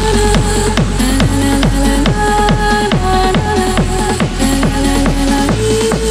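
Hard techno dance track: a fast, steady kick drum under held synth notes, with heavier bass coming in near the end.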